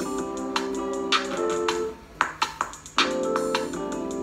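A beat playing from a DAW: sustained keyboard chords in a gospel- and soul-style progression over programmed drums, with a sharp hit about every second and a half. About two seconds in, the chords drop out for about a second, leaving a few scattered drum hits, then come back.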